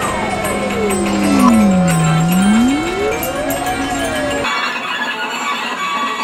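Electronic music: a gliding tone slides slowly down to a low pitch and back up, over steady held tones. The sound changes abruptly about four and a half seconds in, as the low part drops out.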